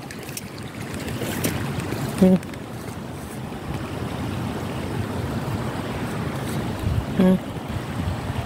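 Floodwater flowing steadily, a shallow muddy current running over a field after heavy rain. Two brief hums of a man's voice break in, about two seconds in and near the end.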